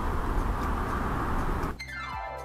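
Steady room noise in a dance studio with no voice. Near the end it cuts abruptly to the opening of an outro music jingle, with steady tones and a falling sweep.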